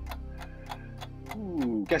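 Game-show countdown clock ticking steadily, about four ticks a second, over a steady background music bed, marking the running time of a timed quiz round.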